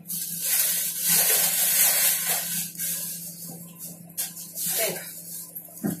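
Plastic grocery bags and packaging rustling and crinkling as items are pulled out and handled, in uneven bursts that are loudest in the first few seconds.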